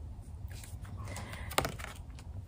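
Quiet pause with a low steady hum and one sharp click about one and a half seconds in, as an oracle card is handled and raised.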